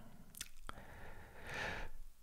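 Faint mouth noises close to the microphone: two small lip or tongue clicks about half a second in, then a soft breath near the end.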